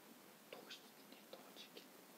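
Near silence with a few faint, short breathy voice sounds like soft whispering, about half a second in and again around one and a half seconds.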